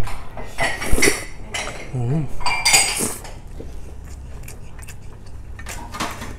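Wooden chopsticks clinking and scraping against an iron pot while noodles are scooped out and eaten, with the sharpest clinks in the first three seconds and lighter taps after.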